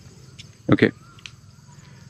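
Faint, steady chirring of insects in dense tropical vegetation, with a single spoken "okay" about a second in.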